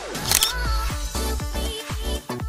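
A camera-shutter click sound effect about a third of a second in, over electronic dance music with a steady kick-drum beat.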